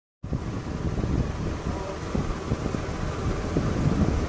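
Steady low rumbling noise of air buffeting a clip-on microphone, a fluttering wind-like roar with no other distinct sounds.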